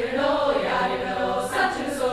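Large mixed choir singing, held chords of many voices with sharp hissing consonants cutting in about every second.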